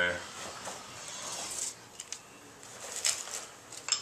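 Scraping freshly ironed soft base-prep wax out of the groove of a Nordic ski: a scratchy hiss for about two seconds, then a few short scrapes near the end.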